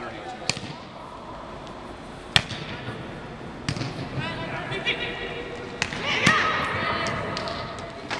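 Volleyball practice in a large gym: about five sharp smacks of volleyballs being passed and hit, the loudest about two and a half seconds in, over players' and coaches' voices calling across the court.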